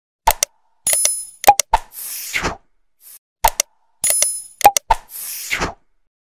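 Subscribe-button animation sound effects: a few sharp clicks, a high bell-like ding and a whoosh. The sequence plays twice, repeating about every three seconds.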